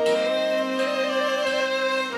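Belarusian folk instrumental music: a slightly wavering melody of long held notes over a steady low drone.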